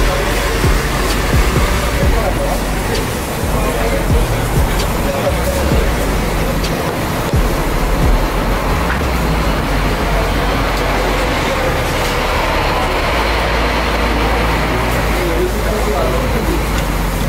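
Steady street traffic noise mixed with background music and people talking in the distance.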